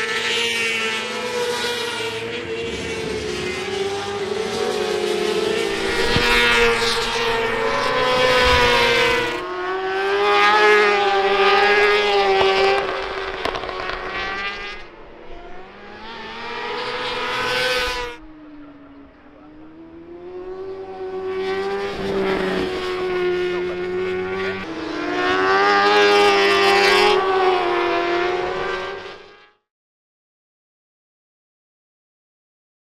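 Racing motorcycle engines running at high revs as bikes pass on a circuit, the note rising and falling in pitch and swelling and fading with each pass. The sound cuts off suddenly near the end.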